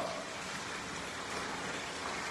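Steady background hiss of room noise picked up by a phone microphone, with no distinct events.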